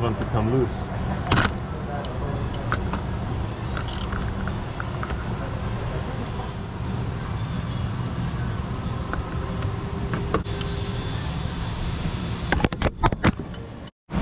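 Socket and extension working the fuel filter housing cap of a Cummins diesel: scattered metal clicks and knocks, with a cluster of sharp clicks about a second before the end. A steady low hum runs underneath.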